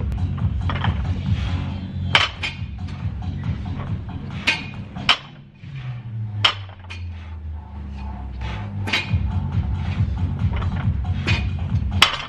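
A barbell loaded with 60 kg of bumper plates clanking each time it is lowered during warm-up deadlift reps, about every two seconds, over steady background music with a low bass line.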